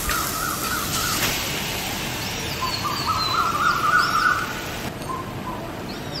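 Birds calling: a wavering, warbling call in the first second and again through the middle, with short higher notes alongside, over a steady background hiss.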